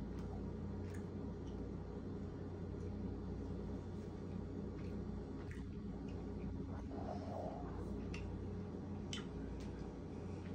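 Faint chewing of a gummy candy: scattered soft mouth clicks over a steady low room hum.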